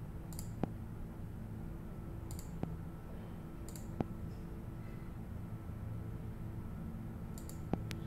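Computer mouse clicking: four separate clicks spread over several seconds, over a steady low hum.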